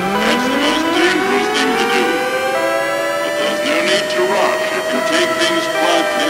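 Dubstep track with an air-raid siren wail: its pitch climbs slowly over several seconds, levels off and starts to fall near the end. Underneath are sustained synth chords and sharp percussion hits.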